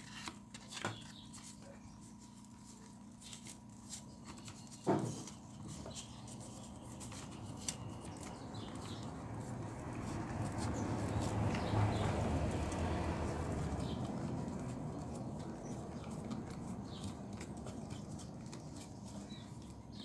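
Quiet handling sounds of hands wrapping floral tape around a wire flower stem, with small scattered clicks and one sharp knock about five seconds in. A low rumble swells through the middle and fades again.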